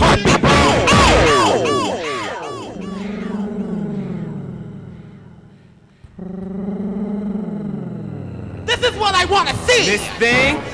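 Vogue ballroom house DJ mix: swooping, pitch-bending vocal samples ride over a beat. About three seconds in the beat drops out to a held, slowly falling tone that fades almost away, cuts back in suddenly about six seconds in, and gives way to the beat again near the end.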